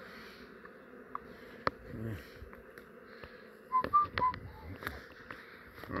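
Honey bees buzzing steadily from a mass of bees crawling in a tub by the hive. About four seconds in, a few sharp knocks come along with three short whistled notes.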